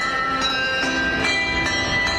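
A tune played on handbells, each bell's tone ringing on and overlapping the next, with a new note struck about every half second.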